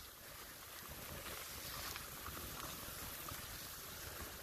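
Steady swishing hiss of a tree trunk and its branches being dragged through snow, towed behind an SUV.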